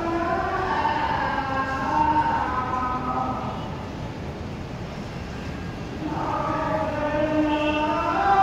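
A man's voice chanting in long, drawn-out melodic tones, with a quieter lull in the middle before the chant resumes: the prayer leader's recitation during congregational prayer.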